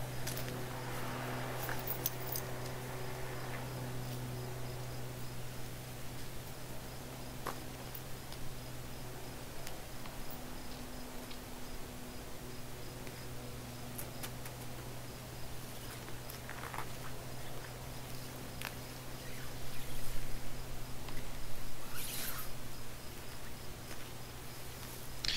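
Scattered clinks, scrapes and rustles as a steel chain is handled around a shrub's base and a mounted car tyre is wedged against it, loudest in the last few seconds, over a steady low hum.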